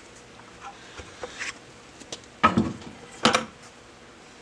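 A plastic bucket being handled and set down: a couple of faint clicks, then two short knocks a little under a second apart.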